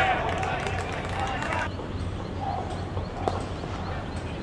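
Cricket players shouting on the field as the batsmen set off on a run, with the calls stopping a little under two seconds in, followed by one sharp knock about three seconds in.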